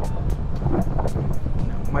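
Wind rush and the drone of a Yamaha R15 motorcycle's single-cylinder engine cruising in fifth gear, mixed with background music that has a steady beat.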